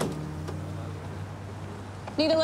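A car engine idling with a low, steady hum, while the held notes of background music fade out in the first second.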